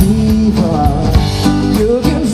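Live band playing a song, loud and steady: acoustic guitar and drums with cymbal strokes, and a singing voice over them.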